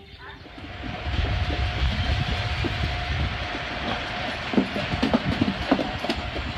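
Steady mechanical rumble with a thin steady whine above it and scattered light knocks, rising in level about a second in.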